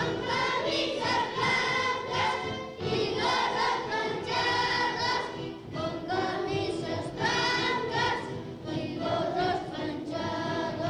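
A group of young children singing a ronda (circle song) together in unison, phrase after phrase of held notes with brief breaks between them.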